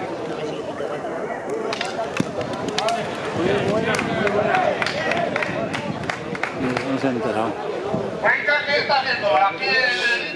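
Background chatter of several people talking at once in a seated crowd, with a few sharp knocks in the first half. Near the end a higher-pitched voice speaks up louder and closer.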